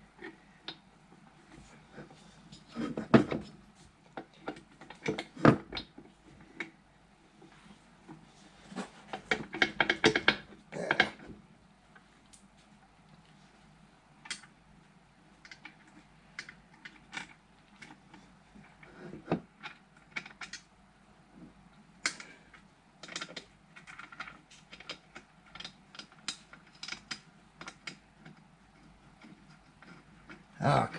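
Irregular metallic clicks, taps and knocks from hands and a tool working parts on a Stover Duro 1/2 HP stationary engine while trying to start a bolt. The sounds come in clusters, the loudest about 3 and 10 seconds in, with scattered lighter ticks later.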